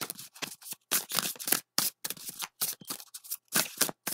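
A tarot deck being shuffled by hand: a quick, irregular run of crisp card slaps and rustles, about four or five a second.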